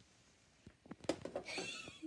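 Light knocks and clicks of handling and movement, then a short, high, wavering squeak near the end.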